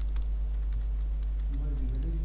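Typing on a computer keyboard: a scatter of light key clicks, over a steady low hum.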